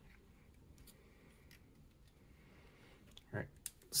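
Faint, scattered clicks of fingers handling an AR-15 dust cover and its hinge rod on the upper receiver. Near the end comes a brief louder sound and a couple of sharper clicks.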